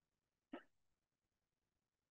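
Near silence, broken once about half a second in by a single short vocal sound from the teacher.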